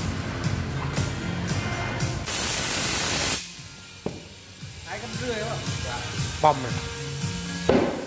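A burst of compressed air hissing into a car tyre from a tyre-changer's inflator for about a second, inflating it to seat the freshly lubricated beads on the rim. A single sharp snap follows shortly after.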